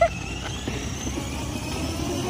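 Battery-powered ride-on toy car driving across asphalt: a steady low rumble from its plastic wheels and small electric motor.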